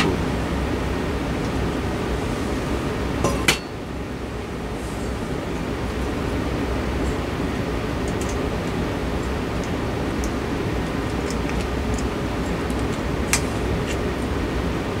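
A few light glass-and-metal clinks and a sharp click about three and a half seconds in, with another near the end, as a ceiling fan's light fixture is handled. A steady background noise runs underneath.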